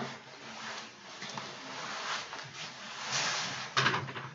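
Quiet handling noises: soft rustling and light contact as hand tools are picked up and moved about, with one short, louder scuff or knock just before the end.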